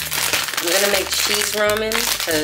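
A plastic packaging bag crinkling as it is handled, with a woman's voice speaking over it in short bits.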